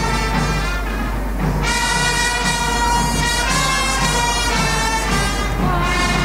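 Boys' Brigade brass band playing a march, brass holding long notes over a steady drum beat about twice a second, with a low hum underneath.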